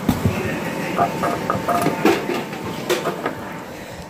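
A thump, then scattered light knocks and brief clinks over a steady hum, the sound of objects being handled in a back-of-restaurant area.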